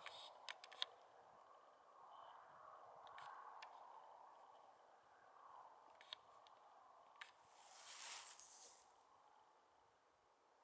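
Near silence: faint outdoor background with a few faint clicks and a soft hiss about eight seconds in, then dead silence for the last second.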